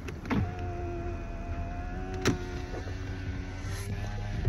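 Car power window motor running, a steady whine with a sharp click a little past two seconds in, over the low hum of the idling car.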